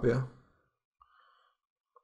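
A man's voice trails off, then near silence with a faint click about a second in and another just before speech resumes: computer mouse clicks while selecting text.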